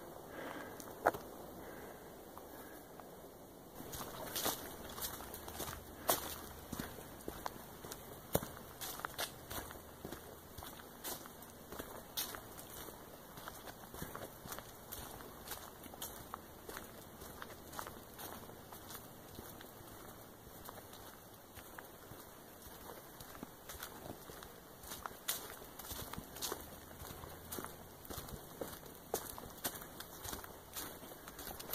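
Footsteps of a hiker walking along a dirt hiking trail: a run of short, uneven steps that starts about four seconds in.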